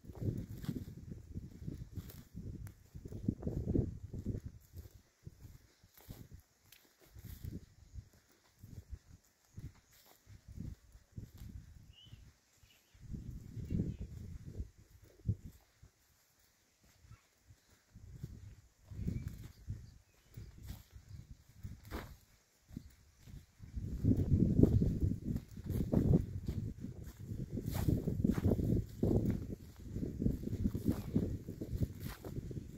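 Wind buffeting the microphone in irregular low gusts with short lulls, heaviest over the last six seconds, with faint footsteps on dry grass and loose soil.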